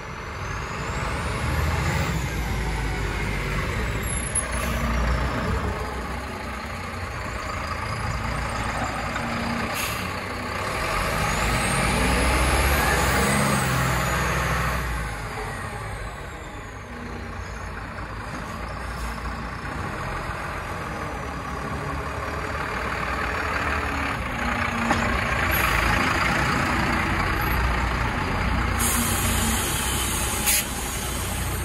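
Iveco Stralis garbage truck's diesel engine running as the truck pulls forward, rising and falling with the throttle, with a short hiss of air brakes about ten seconds in.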